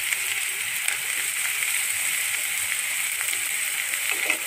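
Chopped onions and green chillies sizzling in hot oil in a non-stick kadai, a steady hiss.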